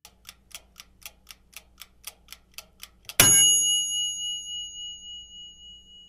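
Countdown timer sound effect: a clock ticking about four times a second, then about three seconds in a single loud bell ding that rings on and slowly fades, signalling that time is up.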